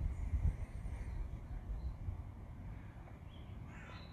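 Quiet outdoor background with a low rumble, strongest in the first second, and a faint bird call near the end.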